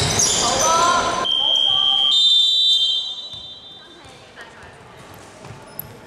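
Voices calling out on an indoor basketball court, then a referee's whistle blown in one long blast of about a second and a half that jumps up in pitch halfway through.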